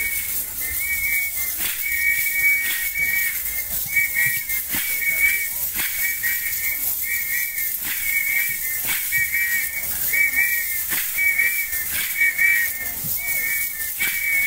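Dance whistle blown in short, trilling pulses about twice a second in a steady rhythm, over sharp percussive beats roughly once a second: the accompaniment to an Akamba traditional dance.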